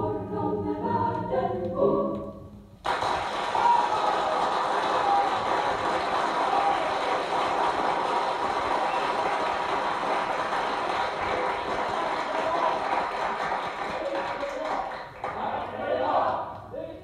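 A choir singing from an LP recording, cut off suddenly about three seconds in and replaced by a long, dense, steady noise with faint wavering tones in it, which gives way to voices near the end.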